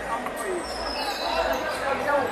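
Players and spectators shouting and talking in an echoing indoor futsal hall, with the ball being struck and bouncing on the court.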